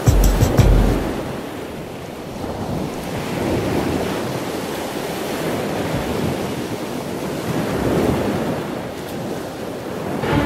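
Ocean surf washing onto a beach, a steady rush that swells and falls every few seconds. Music fades out in the first second.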